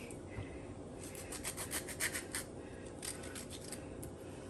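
Kitchen knife cutting through a lime, then the cut lime rubbed over raw turkey skin to clean it: soft, irregular scraping and rubbing.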